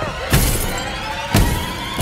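Glass shattering in two heavy hits about a second apart, over tense music with a faint rising tone.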